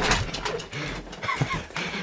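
People laughing in short, broken bursts, with a single sharp knock right at the start.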